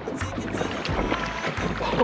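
Water splashing against a small aluminium boat's hull as a hooked fish thrashes at the surface, with wind rumbling on the microphone and background music underneath.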